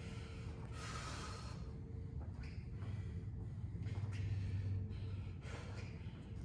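A man breathing hard after high-intensity interval exercise: a few heavy breaths, the loudest about a second in, over a low steady hum.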